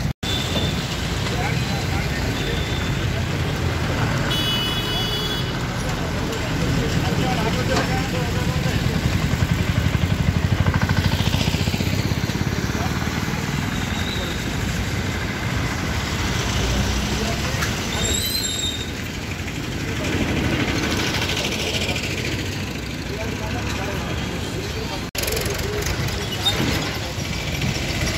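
Street ambience: vehicle engines and traffic running, with background voices, briefly cutting out near the end.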